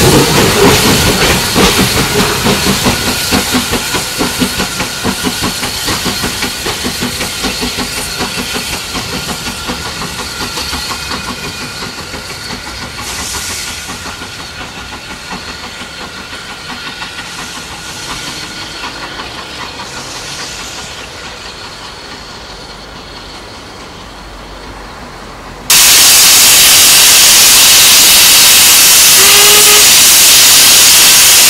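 Small saddle-tank steam locomotive working a goods train: its rhythmic exhaust beats and running sound fade steadily over most of the stretch. Near the end it cuts suddenly to a loud, steady hiss of escaping steam close by.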